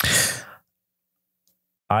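A man's short audible breath, lasting about half a second, taken in a pause between words.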